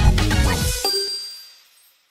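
Electronic dance intro music cuts off about a second in on a bright bell-like ding sound effect, whose high ringing tone fades away over the next second.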